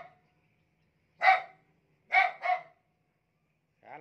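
A dog barking: one bark about a second in, then two quick barks close together about a second later.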